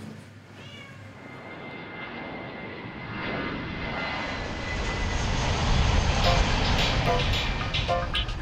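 A cat meows briefly near the start. Then a jet airliner's engine noise builds steadily, with a thin whine, as the plane comes in low to land, loudest about three-quarters of the way through.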